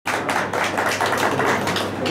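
A fast, uneven run of sharp claps, about four or five a second, typical of people clapping by hand.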